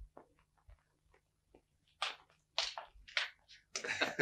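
A few faint soft knocks, then from about halfway a few short, breathy bursts of stifled snickering from men.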